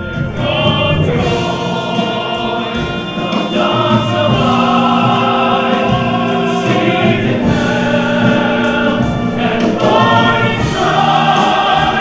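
Musical-theatre singing: a male lead voice with male ensemble voices joining, over musical accompaniment, including long held notes.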